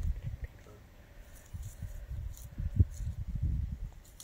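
Wind buffeting the microphone outdoors: an uneven low rumble that swells in gusts, strongest in the second half.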